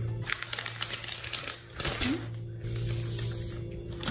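Thin clear plastic protective wrap being peeled off a new MacBook Pro laptop: a run of quick crackles, then a longer, softer rustle in the second half.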